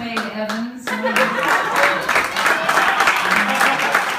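Hands clapping over a live band playing softly underneath. The clapping thins out for a moment near the start and then comes back thick.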